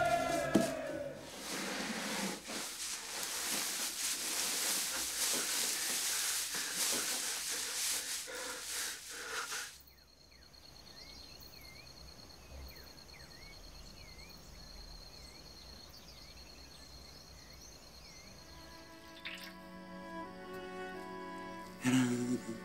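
A singing voice fades out in the first second. Then a steady hissing rush of noise runs until it cuts off suddenly about ten seconds in. After that comes a quiet ambience with a faint, steady, high pulsing trill and scattered short chirps, and held music notes come in near the end.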